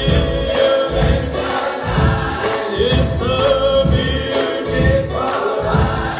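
Gospel choir singing together over a steady beat of about two strikes a second.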